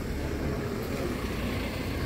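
Steady low rumble of street traffic and outdoor background noise, with no distinct events.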